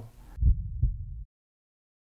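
Two dull low thumps about a third of a second apart over a low rumble, cutting off abruptly into silence.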